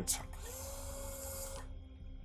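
Mouthpiece ventilator delivering a breath through the tube at the mouth: a soft hiss of air with a faint steady whine for about a second and a half, over a low hum.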